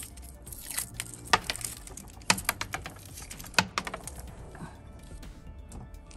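Crinkling and clicking of a Mentos roll's paper-and-foil wrapper being torn open and the candies handled, with three sharper snaps among the crackle.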